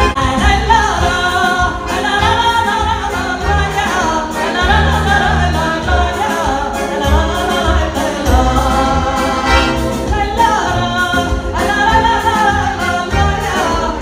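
A woman singing a Portuguese popular dance song through a microphone, accompanied by a button accordion playing chords over a steady bass beat.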